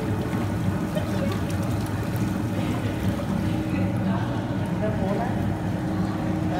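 A baby spa tub's bubble jets running steadily: a constant low motor hum over churning, bubbling water.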